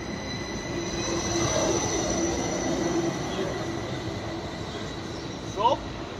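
Swiss SBB double-deck electric train at a station platform: a steady hum with thin, high whining tones. A brief rising voice is heard near the end.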